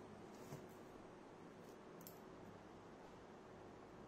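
Near silence: room tone, with a faint click about half a second in and a brief faint high sound about two seconds in.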